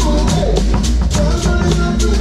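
Live funk band playing, led by a drum kit close to the microphone: a busy, even pattern of cymbal and snare strokes over a steady low bass and pitched keyboard and vocal parts.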